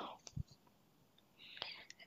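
Soft whispered speech: a whispered word trails off at the start, followed by a few faint clicks and a soft breathy hiss near the end.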